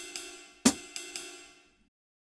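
PolyNome metronome app's sampled jazz ride cymbal playing a swung pattern at 120 BPM: ride on beat one, two and the late 'and' of two, with a hi-hat foot chick on two. The last strokes ring out and fade away shortly before the end.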